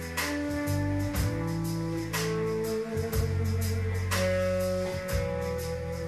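Live band music: electric guitar and bass playing held chords over a drum-kit beat, with a sharp drum hit about once a second.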